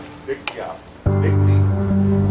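A cricket chirping in a steady, rapid high-pitched pulse. About a second in, background music of low sustained notes comes in and becomes the loudest sound.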